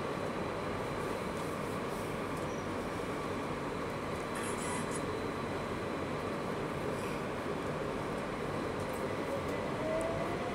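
Victoria line 2009 Stock Underground train running through a tunnel, heard from inside the carriage as a steady rumble of wheels and running gear. A faint whine rises in pitch near the end.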